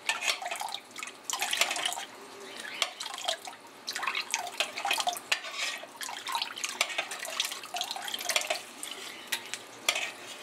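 Diluted liquid rennet poured in a thin stream into a stainless steel pot of warm milk while a spoon stirs it round. The liquid splashes, and the spoon makes irregular scrapes and clinks against the pot.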